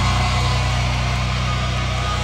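Live rock band holding a loud, distorted low chord: bass and electric guitars ringing on together, with guitar feedback pitches sliding and holding above the steady drone.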